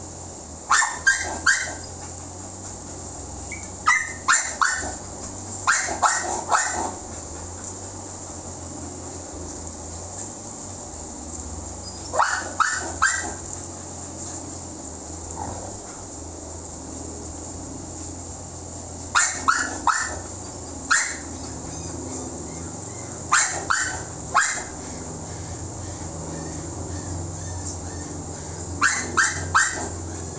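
A dog barking in short bursts of two to four barks, repeated about nine times at irregular intervals, over a steady low hum.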